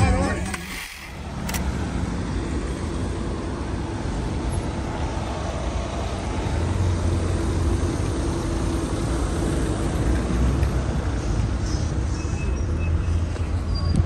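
Steady road traffic noise: cars and their tyres on the road, a low rumble that swells a little past the middle.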